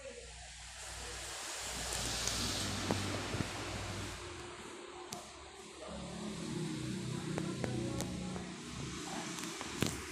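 Rustling handling noise on a phone's microphone as it is moved about, with a few light clicks, over a faint low background hum.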